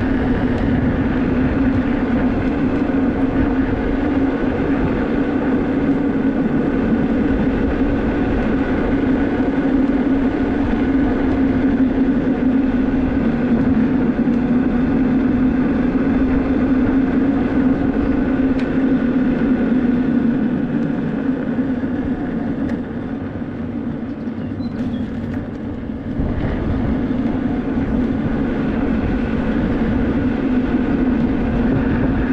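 Electric unicycle riding along an asphalt road: wind buffeting the microphone under a steady hum from the tyre and hub motor. It goes a little quieter for a few seconds about three quarters of the way through.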